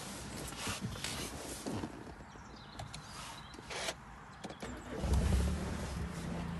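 Scattered clicks and handling noise inside a 2016 Mini Clubman Cooper's cabin, then about five seconds in the car's engine starts and settles into a steady low idle.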